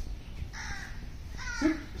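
A crow cawing twice in the background, the first call about half a second in, with a man's short spoken command near the end.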